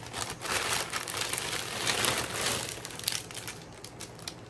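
Plastic shipping bag crinkling and rustling as hands rummage in it, a dense, continuous crackle that thins out near the end.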